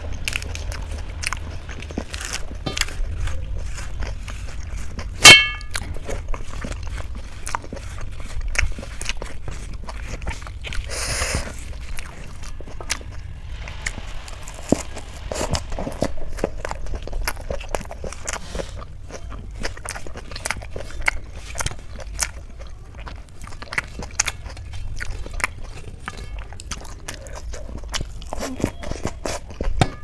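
Close-up mouth sounds of chewing a raw lettuce leaf: wet clicks and crunches, with fingers smearing food on a steel plate. One sharp, loud ringing clink comes about five seconds in, over a steady low hum.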